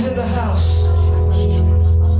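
Keyboard music playing held chords over a steady bass, with a person's voice over it about half a second in.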